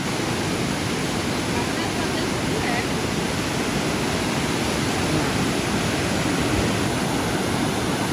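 River rapid pouring over rock ledges and small falls: a steady, unbroken rush of water.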